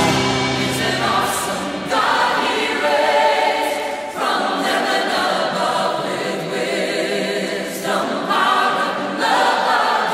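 Background music with a choir singing, in phrases that change every few seconds.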